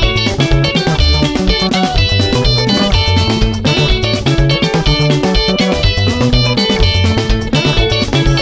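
Instrumental passage of Zimbabwean sungura music: fast interlocking electric lead and rhythm guitar lines over a bass guitar and drums keeping a steady beat, with no singing.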